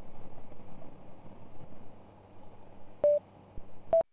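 2019 Honda Gold Wing's riding noise, a steady engine and wind hum picked up by the helmet camera, becoming quieter after about two seconds. About three seconds in a click and one short beep, and right at the end another click and a slightly higher beep: the Sena 10C Pro helmet camera's recording tones.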